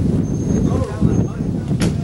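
Indistinct voices of people talking over a steady low rumble, with one sharp click near the end.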